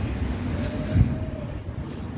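Outdoor street background: a steady low rumble of wind on the microphone and distant traffic, with a brief low thump of a gust about halfway through.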